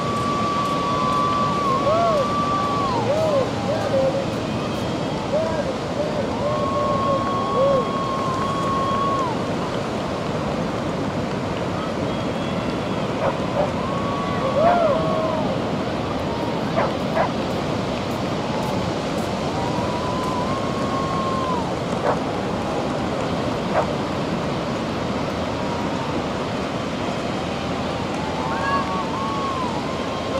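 Ocean surf breaking steadily, with wind on the microphone. Over it come several high, drawn-out calls, each a second or two long, and a few shorter yelps.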